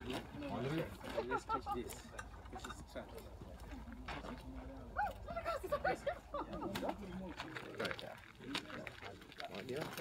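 Indistinct voices of people talking quietly, too faint to make out, over a low steady rumble that drops away about seven and a half seconds in.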